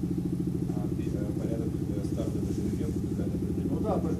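A low mechanical drone with a fast, even pulse, like a small motor running, with faint talk over it.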